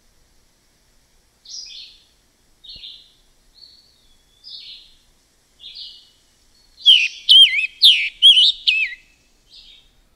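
Scarlet tanager song: a series of short, hoarse, burry phrases about a second apart. In the last three seconds comes a louder run of clear, wavering whistled notes.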